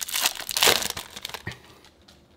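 Foil trading-card pack wrapper crinkling in the hands, a dense crackle for about the first second that dies down, with one sharper click about one and a half seconds in.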